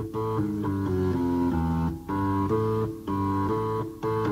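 Early-1970s hard rock recording: electric guitar and bass guitar play a riff in repeated phrases, each broken by a short stop about once a second. There is no singing.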